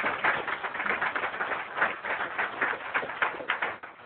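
Audience applauding, many hands clapping in a dense, steady patter.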